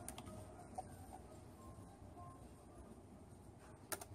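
Quiet room tone with a few computer mouse clicks: a faint click just after the start and a sharper one near the end, as a link on a web page is clicked.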